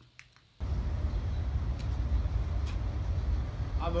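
Steady low outdoor rumble that starts suddenly about half a second in, with a couple of faint clicks in it.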